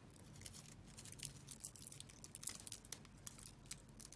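Faint rustling and crackling of a small artificial-greenery wreath being bent and shaped by hand, with many little crisp ticks.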